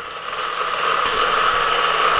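Hot Wheels Criss Cross Crash track's battery-powered booster motors running: a steady whir that grows louder over the first second, then holds.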